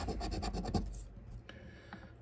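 A coin scratching the latex coating off a scratch-off lottery ticket, uncovering a winning number. It makes a run of quick back-and-forth scrapes, about a dozen a second, for roughly a second, then trails off.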